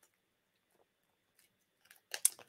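Near silence, with a few faint crinkles and clicks of a plastic coin package being picked open by hand.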